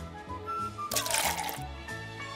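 Light background music with a bass line and a simple melody. About a second in, a short splashing hiss of bleach poured from a plastic jug onto asphalt.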